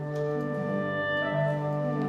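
Symphony orchestra holding a sustained chord, with wind instruments prominent; the lower notes shift about halfway through.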